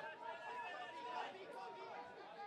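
Several indistinct voices shouting and calling at a rugby match, faint and far from the microphone.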